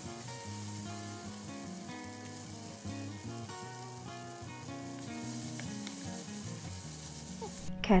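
Sliced sausages sizzling in oil in a frying pan as a spatula stirs them, with background music playing underneath. The sizzle stops shortly before the end.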